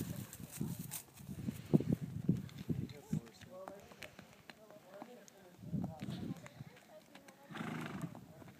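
Short, wordless voice sounds in the first few seconds, then a quieter stretch with faint hoof steps of a horse walking on a dirt road.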